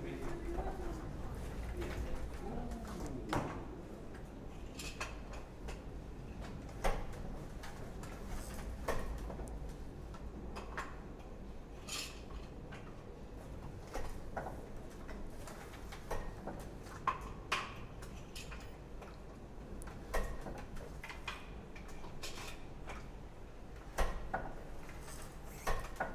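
Wooden fly-shuttle hand loom being worked: sharp wooden clacks and knocks at irregular intervals of one to three seconds as the shuttle is fired across the cloth by the cord-and-hammer picking mechanism and the beater is swung against the weave.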